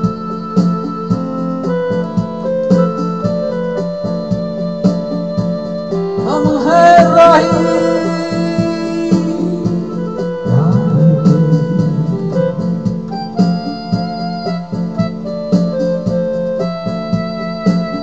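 Electronic keyboard music with held chords over a steady rhythm-box beat, and a man's singing voice coming in for stretches about six and eleven seconds in.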